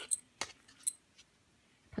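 About four light clicks and clinks, two of them briefly ringing, as metal-rimmed monocles are handled and set into a small box.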